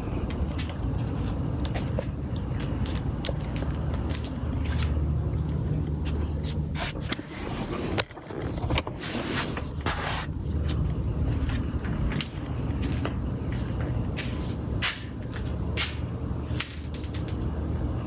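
Pickup truck engine idling steadily, with scattered short clicks and knocks over it.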